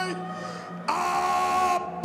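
A ring announcer's voice over the arena PA, drawing out the boxer's name in long, held, sung-like notes: one note ends just after the start, a second is held for about a second, and another call begins near the end, falling in pitch.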